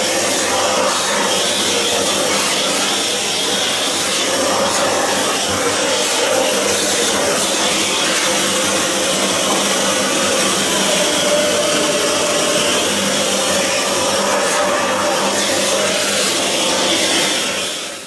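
Electric rotary carving tool running steadily as it cuts wood, its motor pitch wavering slightly. The sound fades out at the end.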